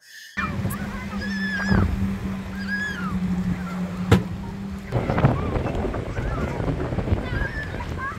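Lakeside beach ambience: distant children's voices calling and shrieking over a steady rumble of wind and water, with a low hum in the first half that stops about five seconds in. Two sharp clicks stand out, near the start and about four seconds in.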